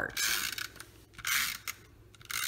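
Tape-runner adhesive dispenser drawn across the back of cardstock, laying down double-sided adhesive: two short strokes, one at the start and one a little over a second in.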